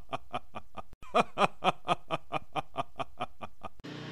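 A person laughing in a steady rhythm of short 'ha's, about four a second. The laugh breaks off about a second in, starts again and stops just before the end.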